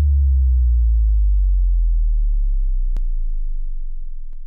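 A deep synthesized bass tone, the falling 'downer' hit of trailer sound design, sliding slowly down in pitch and fading out. A single sharp click about three seconds in.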